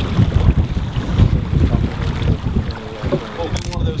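Wind buffeting the microphone, an uneven gusty low rumble, with faint voices in the second half.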